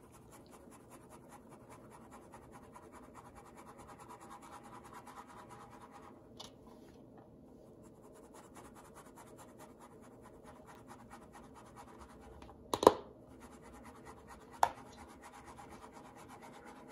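Flour being sifted through a fine stainless-steel mesh sieve shaken over a bowl: a faint, rapid scratchy rustle, with two sharp knocks near the end.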